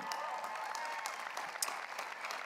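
Large crowd of graduates applauding: a dense, steady patter of many hands clapping, with a few short rising-and-falling calls from the crowd over it in the first second.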